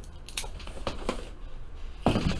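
A few light clicks and rustles as a pen and a cardboard box are handled on a tabletop.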